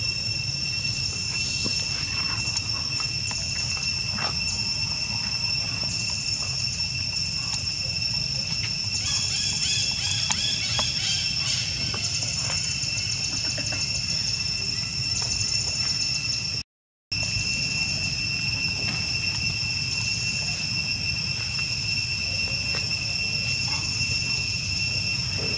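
Steady, high-pitched insect drone over a low background rumble, holding one pitch throughout and thickening briefly about ten seconds in. The sound cuts out completely for a moment about seventeen seconds in.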